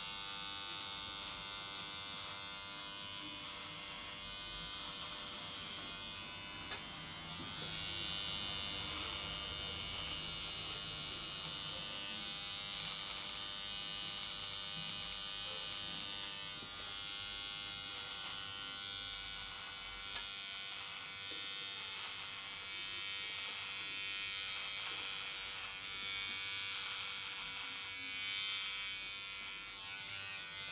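Electric beard trimmer buzzing steadily as it is run over the beard along the neck and jaw, growing louder about seven seconds in.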